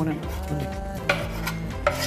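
Chopped garlic scraped off a wooden cutting board into a steel pot, with a couple of short scraping strokes, one about a second in and one near the end.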